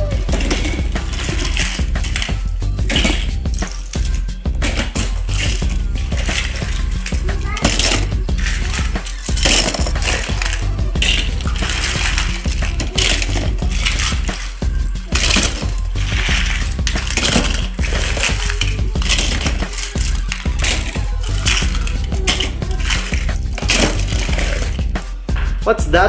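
Small plastic and die-cast Thomas toy trains clattering against each other as they are dropped and sorted into a plastic storage bin: a steady run of quick clicks and knocks, with music underneath.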